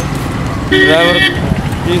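Steady low rumble of road traffic on the highway, with a short pitched sound lasting about half a second, just under a second in.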